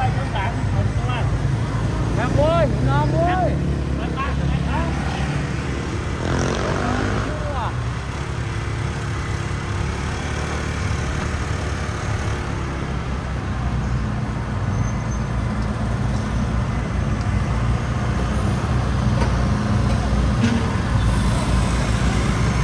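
Steady city street traffic, with motor scooters and cars running and passing close by. Snatches of passing voices come in the first few seconds.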